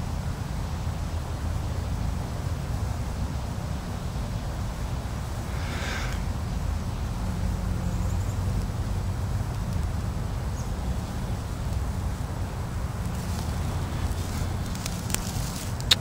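Steady low rumble of air as a smouldering broom-sedge tinder bundle is blown on to bring it to flame, with a few faint crackles near the end as the grass catches fire.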